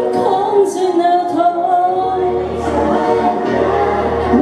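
A woman singing a Mandarin pop ballad into a handheld microphone over a karaoke backing track, holding long melodic notes; a low bass line comes in about halfway through.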